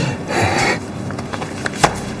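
A short rubbing noise, then a few light clicks and taps, the sharpest one near the end.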